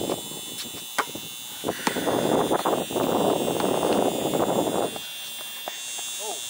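A few sharp knocks, about a second in and again just before two seconds, followed by a stretch of rustling noise that dies away about five seconds in. A steady high-pitched whine runs underneath.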